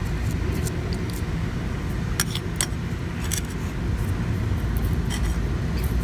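Steady low background rumble outdoors, with a few light clicks from a clear plastic tub of lettuce seeds being handled, about two, three and five seconds in.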